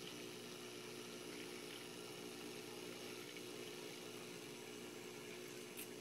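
Faint steady hum made of a few held tones over a light hiss, like a small motor or pump running, with a couple of faint clicks near the end.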